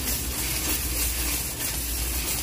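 Steady rolling noise and hiss of a wire shopping cart being pushed along a smooth store floor, with a low steady hum underneath.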